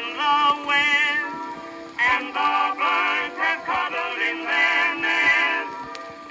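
Early acoustic-era 78 rpm recording of a male vocal quartet with orchestral accompaniment. The sound is thin and narrow, with no bass below about 200 Hz, and the wavering notes change every fraction of a second.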